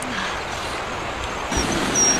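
Whole goose eggs frying in oil in a large wok over a wood fire: a steady sizzle that grows louder about one and a half seconds in.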